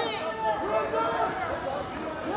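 Spectators' voices and chatter in a gym, several voices overlapping, with no single clear speaker.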